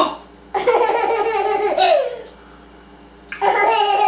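A baby laughing: a short burst at the start, then two long bouts of high-pitched laughter with a pause between them.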